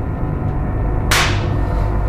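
Low droning horror-film background music, with a sudden hissing hit about a second in that fades within half a second.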